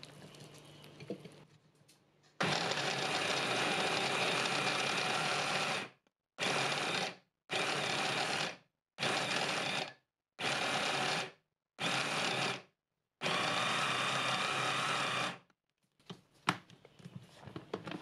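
Braun hand blender's mini chopper attachment mincing cold raw chicken into paste: one run of about three and a half seconds, then five short pulses of about a second each, then a final run of about two seconds. It is pulsed on and off so that the small motor does not burn out.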